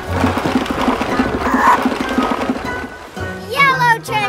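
Cartoon sound effect of a wooden barrel rolling: a dense rumble with rapid regular pulses, over background music. Near the end a baby's voice calls out with a rising and falling 'ooh'.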